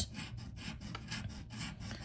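A coin scratching the coating off a Power Payday scratch-off lottery ticket, a dry scraping in quick repeated strokes.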